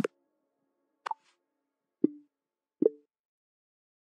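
Linux Mint 21.1's Cinnamon desktop system sounds, the new set taken from Material Design version 2, played one after another as tests: four short, soft pops about a second apart, each at a different pitch.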